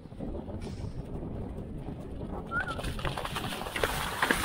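Pony galloping on turf with wind rushing over a helmet-mounted microphone; about two and a half seconds in, splashing starts as the pony gallops into a water jump, growing into sharp splashes near the end.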